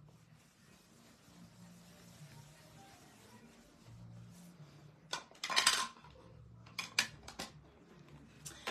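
Faint rubbing of an ink-blending tool on card, then a short burst of clattering about five seconds in and a few light clicks near the end as craft supplies are handled on a cutting mat.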